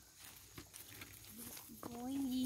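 Near silence: faint outdoor background with a couple of soft clicks, and a brief murmur of a voice starting near the end.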